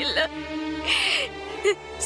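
A woman crying, her voice wavering and falling, with a sharp tearful intake of breath about a second in, over a steady held note of background music.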